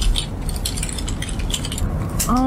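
Rapid, irregular clicking and clattering of computer keyboards being typed on.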